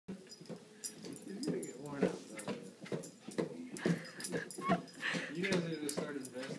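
Rubber balloon tapped up into the air again and again by a small dog's nose, giving sharp irregular taps about once or twice a second. Talk from a television runs underneath.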